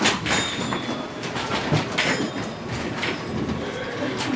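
Chairs being moved, scraping and clattering against the floor several times over a background murmur of people.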